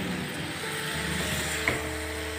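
A steady low hum with a faint high hiss, and a single light click near the end.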